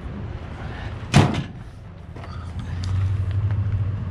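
A single loud slam about a second in, over a steady low engine hum that grows louder near the end.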